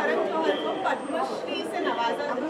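Indistinct chatter of several voices in a large hall, with no other distinct sound.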